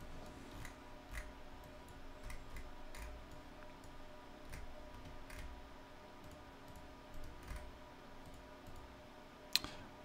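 Faint computer mouse clicks at irregular intervals over a low steady hum, with a sharper click near the end as the map route is clicked to open its popup.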